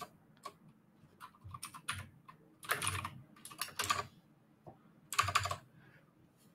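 Typing on a computer keyboard: several short bursts of keystrokes with brief pauses between them.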